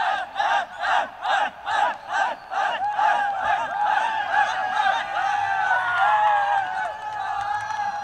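A team of cricket players in a celebration huddle chanting together in rhythmic shouts, about three or four a second, then cheering and shouting as a group, the voices easing off near the end.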